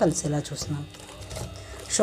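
A woman's voice speaking briefly, then a wire whisk clinking and scraping against a stainless steel bowl as flour is mixed into cake batter.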